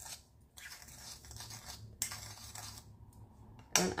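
A spoon scraping and stirring cinnamon sugar in a small bowl, with a sharp click about halfway through.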